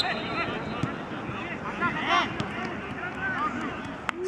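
Several voices of football players and onlookers calling and shouting, overlapping one another, with one louder shout about two seconds in.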